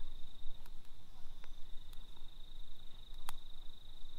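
A cricket trilling steadily on one high, unbroken note, with a few faint clicks over a low rumble of wind on the microphone.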